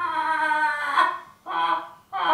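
A young man imitating a bird call with his voice: one long held call that rises and breaks off about a second in, then a shorter call near the end.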